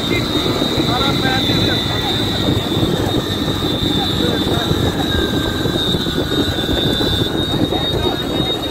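Motorcycle engine running steadily at riding speed with wind noise on the microphone, and a thin steady high whine.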